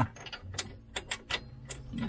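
A handful of light, irregular metal clicks as a small threaded pin with a thin nut is worked by hand into the slot of a VW Beetle's pedal-assembly bracket.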